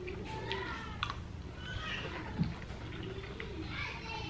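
Mouth sounds of a man eating a forkful of taco lasagna close to the microphone, with a few soft clicks. Faint, high, wavering voice-like calls sound in the background.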